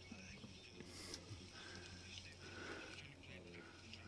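Near silence: room tone with a low steady hum and faint, indistinct speech.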